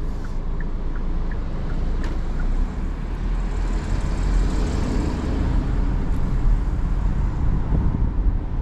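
Engine and road noise inside the cabin of a Hyundai Creta 2022 SUV driving at low city speed: a steady low rumble, with tyre and road hiss swelling in the middle. A few faint ticks in the first couple of seconds.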